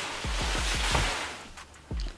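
Handheld camera being moved about: a rustling hiss with a run of soft low thumps for about a second and a half, fading out near the end.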